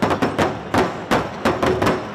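Large barrel drums beaten with sticks in a steady rhythm, about three strikes a second.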